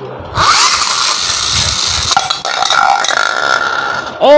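A Beyblade launcher fires about a third of a second in with a sudden whir and a quick rising tone. The released top then spins on a ceramic plate, a steady high whirring hiss, with a thin high hum settling in about halfway through.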